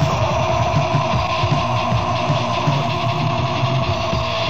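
Melodic doom/death metal band playing an instrumental passage from a demo recording: distorted electric guitars hold long sustained notes over a steady drum beat.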